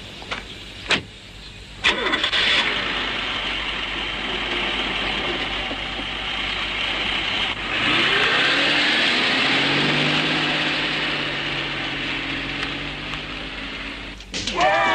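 A car door shuts with a thud about a second in, then the car's engine starts and runs. About eight seconds in it gets louder, with a rising note, as the car drives off.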